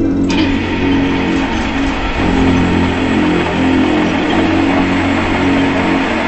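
Background music score with guitar, over a loud steady rushing noise that starts sharply just after the beginning.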